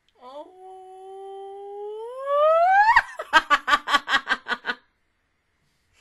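A woman's voice holding a hummed note that climbs into a high squeal, then breaks into a quick run of giggling laughter, about five bursts a second.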